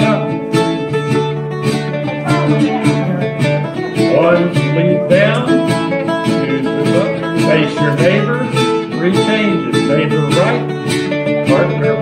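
Live acoustic band playing an English country dance tune: bouzouki and guitar plucking a steady beat, with a recorder.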